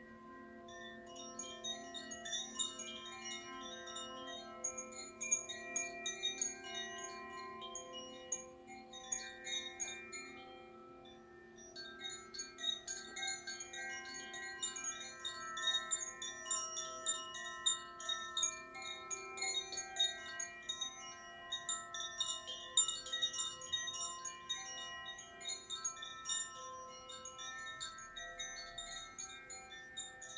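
Metal wind chimes tinkling in a dense, irregular shimmer of high bell-like tones, thinning briefly about a third of the way through, over a steady low sustained ring.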